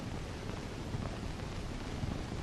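Steady hiss and low hum of an old film soundtrack, with a few faint soft knocks.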